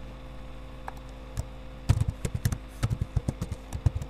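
Computer keyboard typing: a quick run of keystroke clicks starting about two seconds in, over a steady electrical hum.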